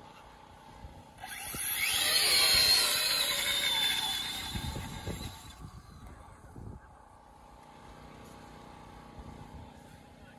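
RC car motor at full throttle for a hill-climb run: a whine that rises sharply in pitch as the car launches, holds high for about three seconds, then cuts off suddenly.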